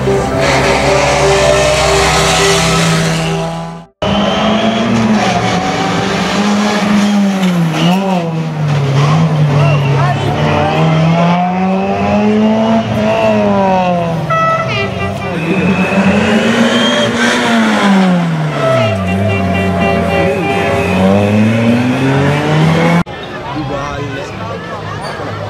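Background music for about four seconds, fading out abruptly. Then a Suzuki Swift Sport rally car's four-cylinder engine is driven hard, its pitch climbing and dropping again and again through gear changes and corners.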